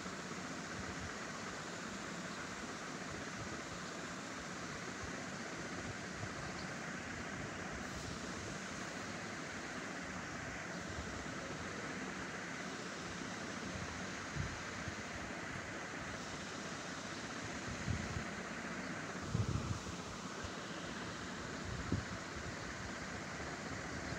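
Steady background hiss, like a fan or room noise, with a few short low thumps in the second half.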